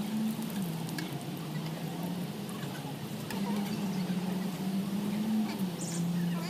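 A pressed block of instant noodles frying in oil on a large flat iron griddle: a steady sizzle, under a low hum that shifts back and forth between two pitches.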